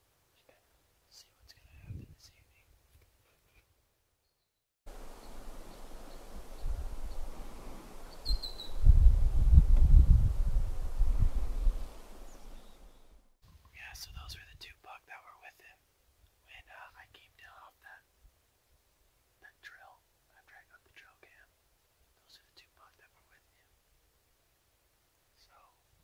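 Wind buffeting the camera microphone for about eight seconds from around five seconds in, heaviest in the middle, with one short bird chirp during it. Before and after it, a man whispers softly.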